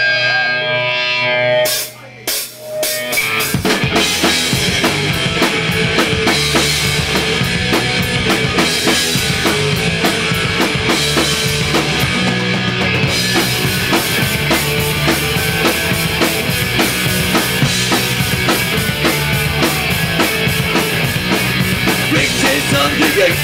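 A live punk rock band playing through a club PA. A held note rings for about two seconds and the level drops briefly. A few sharp drum hits follow, and then drum kit, bass and electric guitar come in together, loud and driving, with no vocals.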